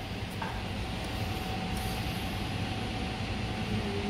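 Steady indoor room tone: a low hum and hiss with no distinct events, and a faint thin steady tone that comes in about half a second in.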